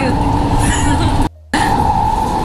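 Doha Metro train running, heard from inside the carriage: a steady low rumble with a constant whine over it. The sound drops out for a moment about a second and a quarter in.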